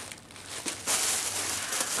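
Thin plastic shopping bag rustling and crinkling as it is handled, starting about half a second in.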